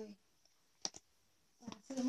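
Two sharp clicks in quick succession about a second in, with a woman speaking Thai just before and after.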